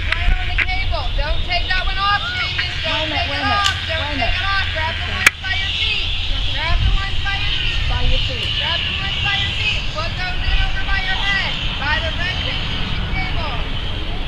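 Indistinct, untranscribed voices talking throughout, over a steady low rumble. A single sharp click sounds about five seconds in.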